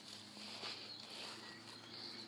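Soft footsteps on wet grass and soil during a walk down a slope, heard faintly over a steady, thin high-pitched hum in the background.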